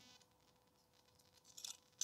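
Near silence, then a few faint, brief metallic scrapes and clicks near the end as thin titanium pot-stand plates are slid into each other's slots.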